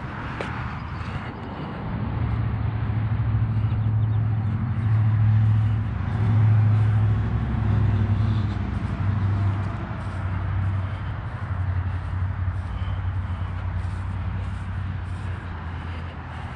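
A low, steady machine hum that grows louder from about two seconds in and eases off after about ten seconds, over a faint outdoor background.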